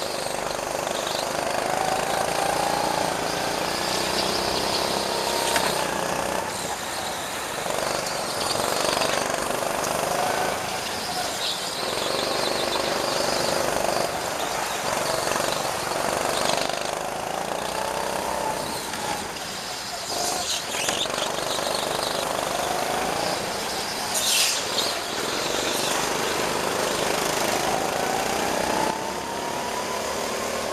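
Go-kart engine heard from on board, its note rising as it accelerates down each straight and dropping away into each corner, over and over through the lap. High squeals come in through the turns, typical of tyres sliding on a smooth indoor track surface.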